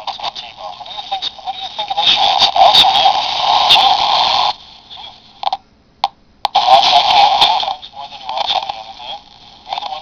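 AM broadcast audio from a homemade amplified crystal radio, played through a small speaker set in a plastic cup. It sounds thin and tinny, squeezed into a narrow midrange, and is loud now that the earth ground wire is connected. About halfway through it cuts out for roughly two seconds, with a few crackles, then comes back.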